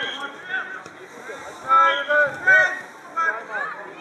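Children's voices shouting and calling out on a football pitch: several short, high-pitched calls, loudest around the middle, over open-air background noise.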